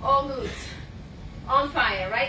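Speech: a voice speaks briefly at the start and again near the end, over a steady low background hum.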